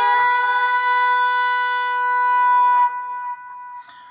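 Distorted electric guitar holding one high note, a half-step bend on the 12th fret of the B string, ringing steadily for about three seconds and then cut off.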